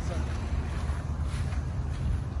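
Steady low rumble of wind buffeting the microphone outdoors.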